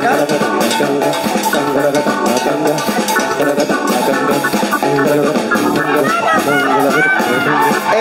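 A live band playing loud dance music, with guitar over a steady drum-kit beat.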